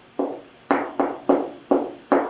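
Chalk tapping and scraping on a chalkboard as numbers are written, about five short, sharp strokes, each with a brief ringing tail.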